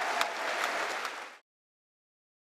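Audience applauding, a dense mass of claps that cuts off abruptly about one and a half seconds in.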